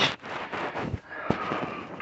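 Rustling and rubbing from a hand stroking a kitten's fur against trouser fabric, with a single sharp click a little past halfway.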